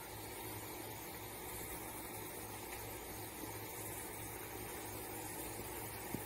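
Faint, steady outdoor background noise with a low hum underneath and no distinct sounds standing out.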